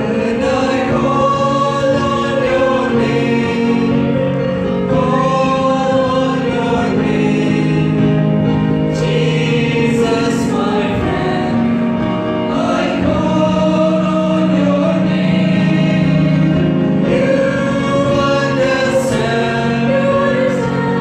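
A choir singing a gospel worship song in parts, with long held notes.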